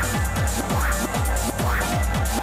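Techno played in a live DJ set: a steady four-on-the-floor kick drum at a little over two beats a second, with a short rising synth sweep recurring about once a second.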